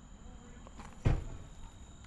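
A man biting and chewing a glazed fried croissant donut, with one short, loud, low thump about a second in. A steady, high-pitched insect chorus runs underneath.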